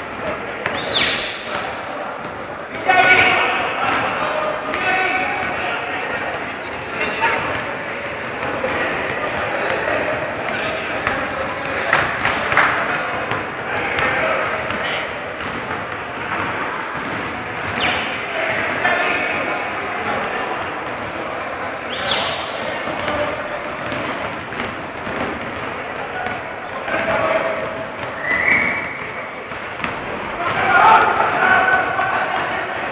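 Live basketball game in a large echoing sports hall: the ball bouncing on the court, sneakers squeaking briefly now and then, and players calling out to each other.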